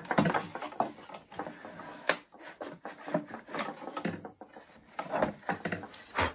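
Handling noise from work inside an opened iMac: scattered clicks, taps and scrapes of plastic and metal parts as hands pull and wiggle internal components and cables loose, with one sharper click about two seconds in.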